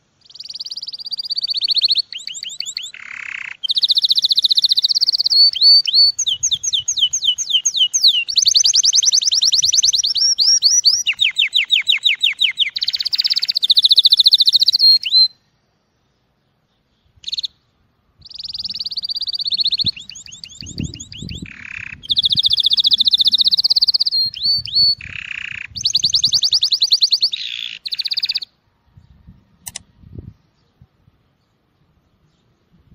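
Male domestic canary singing an excited breeding-season song: long rapid trills and rolls at a high pitch, runs of fast repeated downward-sweeping notes, and a few lower notes. It comes in two long phrases with a pause of two to three seconds in the middle.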